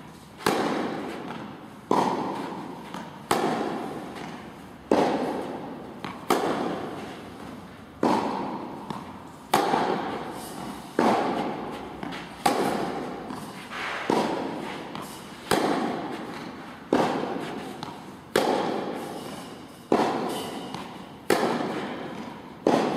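Tennis balls being struck by rackets in a rally, a sharp pock about every second and a half. Each hit rings on in the long echo of a large indoor tennis hall.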